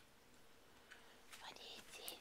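Near silence with a faint steady hum, then a person whispering faintly from about a second and a half in.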